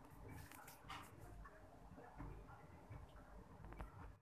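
Faint crackling with scattered small pops and ticks from chicken pieces frying in a little oil under a glass pan lid on low heat.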